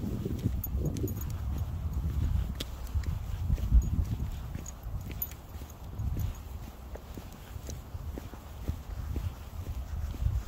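Footsteps of a person and a dog walking, on grass and then on an asphalt path: soft, irregular low thuds with faint light clicks.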